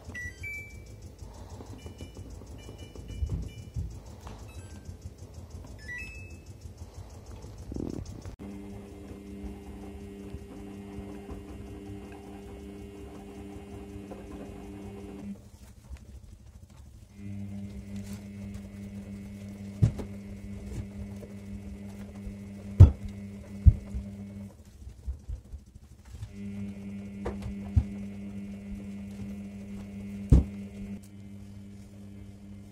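Front-loading washing machine: a few short electronic beeps from its control panel as it is switched on and set, then a steady motor hum in spells of about seven seconds with short pauses between, the drum tumbling at the start of the wash. A few sharp knocks come in the second half.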